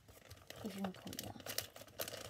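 Faint rustling and crinkling of packaging being handled, with a brief murmur from a voice under a second in.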